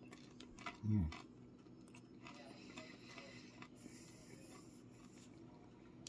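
Faint chewing of crunchy oven-baked fish sticks, with a short falling "mm" of approval about a second in.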